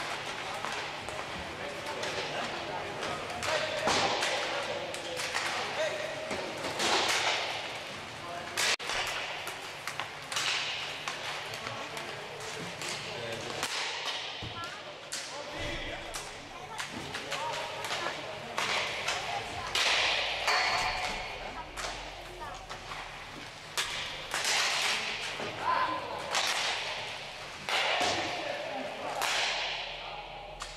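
Inline hockey warm-up: repeated sharp cracks of sticks hitting pucks and of pucks striking the rink boards, coming at irregular intervals, each with a short echo in a large hall.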